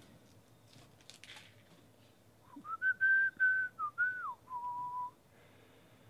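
A person whistling a short phrase: a few high notes, then a falling glide down to a lower held note, about halfway through. Faint rustle of cards being handled comes before it.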